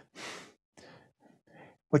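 A man's audible breath, a short breathy rush in a pause between phrases, followed by a few faint short mouth noises.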